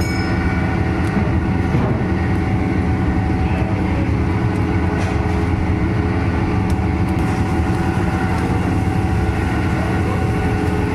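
Steady, loud mechanical drone of a motor or fan: a low hum with several steady tones over it, unchanging throughout, with a few faint clicks about halfway through.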